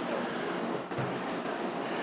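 Steady low background noise with faint handling sounds from a plastic action figure held in gloved hands, and a soft knock about a second in.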